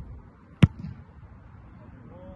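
A single sharp thump of a boot striking a football in a punt, a little over half a second in, over low steady outdoor background noise.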